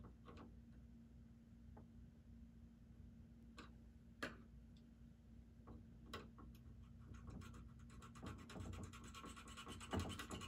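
Near silence: a faint steady hum, with a few faint clicks and scrapes from a small screwdriver working a DC-balance trim pot on a turntable's servo circuit board.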